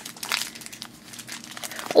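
A foil blind bag crinkling as it is torn open and unwrapped by hand, densest in the first half second and then a few scattered crackles.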